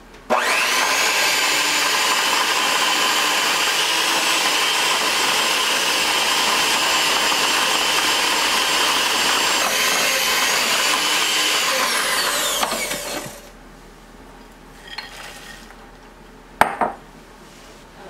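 Black & Decker PowerPro electric hand mixer running at a steady speed, its beaters creaming brown sugar and butter in a glass bowl, with a steady whine. It starts just after the beginning, runs for about twelve seconds, then falls in pitch as it is switched off; a single sharp click follows near the end.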